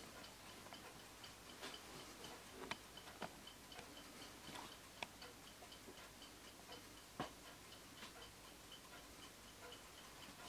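Winterhalder & Hofmeier drop dial regulator clock's deadbeat escapement ticking faintly and evenly, with a few louder, irregular clicks over the ticking.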